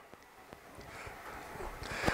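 Faint rustling and handling noise of clothing and a PAPR battery pack being fitted onto a trouser belt.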